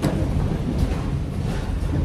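Wind buffeting the microphone: a loud, ragged low rumble without words.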